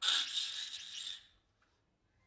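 A man's vocal imitation of a car engine seizing, made into a handheld microphone: a rattling, hissing noise that lasts about a second and trails off.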